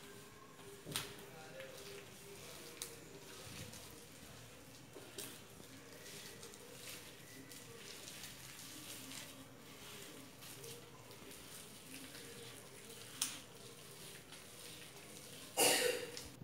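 Hands mixing and squeezing gram flour and water into a crumbly dough in a steel plate: faint rubbing and squishing, with a few light clicks against the steel. A short louder noise comes just before the end.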